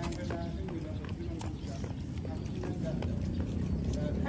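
Footsteps on a concrete street, heard as irregular short clicks a few times a second, over a steady low rumble.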